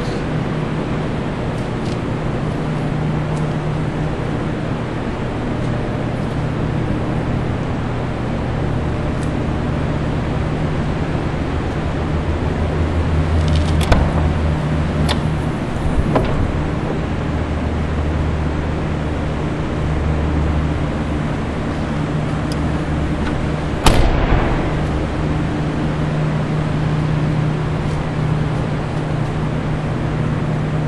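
Steady low mechanical hum throughout, with a few short knocks around the middle and one loud thump a little past two-thirds of the way through.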